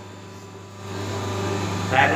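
Steady low hum of a running paper plate making machine, joined by a rising mechanical noise about a second in.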